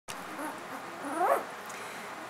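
Newborn Goldendoodle puppies making faint squeaks, with one rising whimpering cry a little over a second in.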